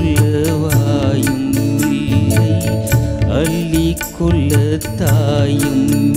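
Live band music with a steady quick beat on tabla and drum kit, carrying ornamented, wavering melodic lines from keyboard and guitars.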